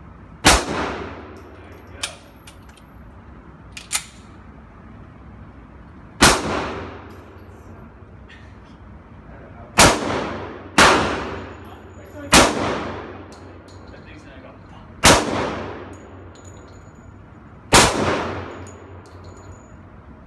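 Springfield XD-45 ACP pistol firing single .45 ACP shots, seven loud reports spaced one to three and a half seconds apart. Each report rings on in the echo of an indoor range. Two much fainter sharp cracks come in the first four seconds.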